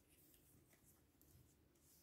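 Near silence with faint, brief rustles and scrapes of glossy paper stickers being slid and picked up by hand.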